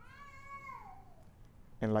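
A faint, single high-pitched cry lasting about a second, held and then falling in pitch at the end, meow-like.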